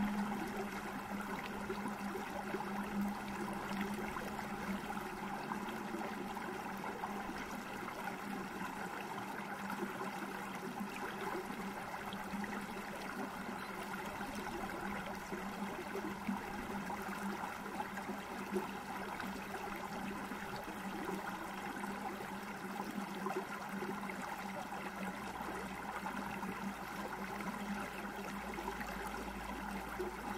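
Recording of a small upland stream (a burn) running and gurgling steadily, with a steady low hum that is strongest in the first few seconds.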